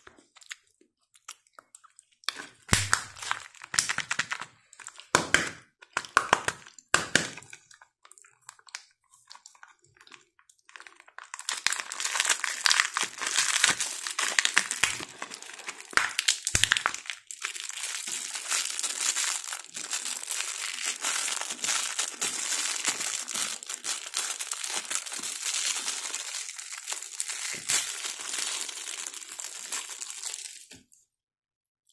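Several sharp cracks and snaps in the first few seconds, then from about eleven seconds in a long, continuous crinkling and tearing of thin plastic wrapping as a Kinder Joy toy capsule and its clear plastic toy bag are opened by hand.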